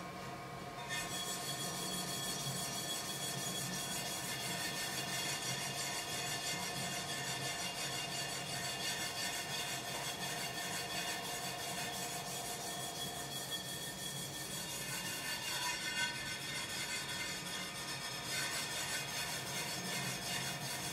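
Hand-spun banding wheel turning steadily, a rolling rumble with a faint steady hum, while a brush rubs glaze inside the ceramic cup; it grows louder about a second in.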